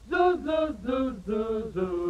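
Male voice scat-singing a quick run of short "doo" notes, about three or four a second, on a vintage 1930s–40s dance-band record.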